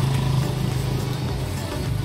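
An engine running steadily, a low even hum with rumble beneath it.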